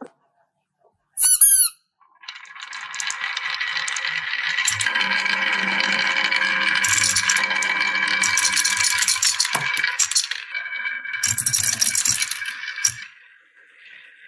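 Marbles rolling and rattling down a carved wooden wavy track. The rolling is continuous, with ringing tones and sharp clicks as the balls knock against the wood and each other; it builds about two seconds in and dies away near the end. About a second in there is a brief, loud swooping tone that falls in pitch.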